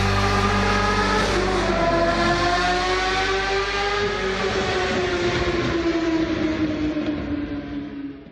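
A motorcycle engine as a sound effect: one long engine note whose pitch slowly falls, fading out at the very end.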